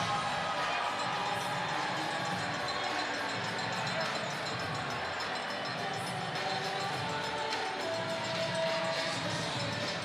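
Music over an ice arena's sound system during a stoppage in play, with the crowd's steady noise beneath it.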